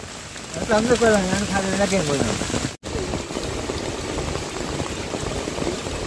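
Steady rain falling, an even hiss throughout. A voice speaks for a couple of seconds in the first half, and the sound drops out for an instant a little before the middle.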